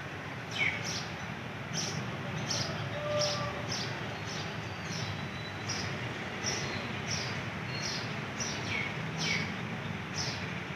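A bird calling over and over in short, high, falling chirps, about two a second, over a steady low background hum.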